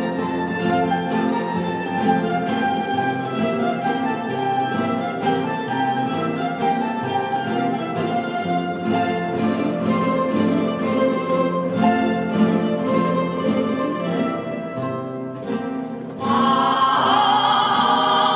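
A rondalla of guitars and bandurria-type plucked lutes playing a flowing instrumental passage in a reverberant stone church. About sixteen seconds in, a solo voice enters singing with vibrato over the strings.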